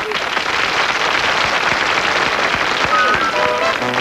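Studio audience applauding. About three seconds in, an orchestra's first held notes come in over it.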